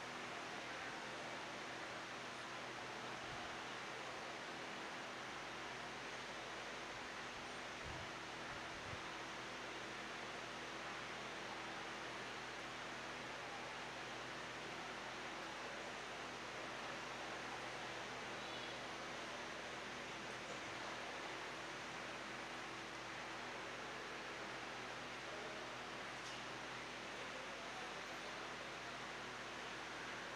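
Steady hiss with a faint low hum underneath, unchanging throughout: background noise of the room and sound system with no one speaking.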